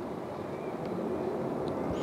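Steady background noise with no clear tone, slowly growing louder, like a distant vehicle passing.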